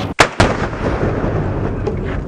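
A distant hand grenade detonating after being struck by a rifle round: a sharp boom about a fifth of a second in, a second crack just after, then a long rolling rumble.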